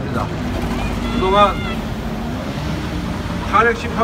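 A steady low outdoor rumble, with short bits of a man's voice carried over public-address loudspeakers: a brief phrase about a second in and speech starting again near the end.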